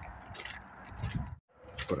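A few faint clicks and rustling handling noises. The sound drops out completely for a moment about a second and a half in, and then a man's voice starts near the end.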